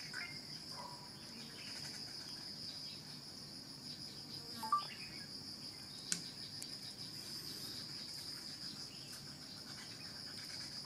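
Steady, high-pitched chirring of an insect chorus, with a few faint short calls near the start and two brief sharp clicks in the middle.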